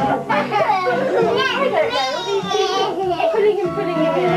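Young children's excited voices, shouting and laughing together as they play, with music playing underneath.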